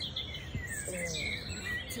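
Wild birds chirping in short high-pitched calls, with a brief spoken "yeah" about a second in.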